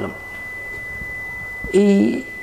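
A steady, high-pitched pure tone, an unbroken whine that holds one pitch, over faint background hiss in a pause between a man's sentences. His voice comes back near the end.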